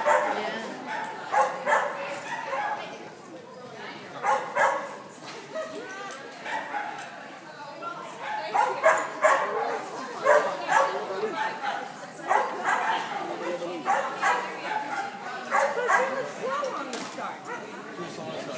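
A dog barking and yipping repeatedly in short bursts while running an agility course, with people's voices in the background.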